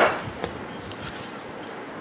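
A sharp metal click from a microwave oven magnetron's parts being handled as it is taken apart, followed by a lighter click about half a second later.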